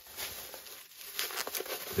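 Scissors cutting through bubble wrap and packing tape, with the plastic crinkling. A few short, sharp crackles come just after the start and again past the middle.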